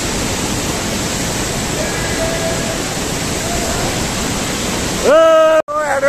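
A close mountain waterfall: falling water rushing steadily as an even, unbroken hiss. About five seconds in, a loud voice cuts in over it.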